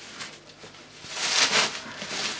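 Plastic bin liner rustling and crinkling as it is grabbed and pulled, starting about a second in after a moment of quiet.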